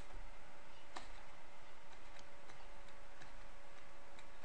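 Faint light clicks at uneven intervals, made while letters are handwritten in a computer drawing program, over a steady faint electrical hum.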